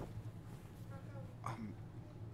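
Faint, brief vocal sounds from a person in a quiet room: a short voiced sound about a second in and another brief one about half a second later.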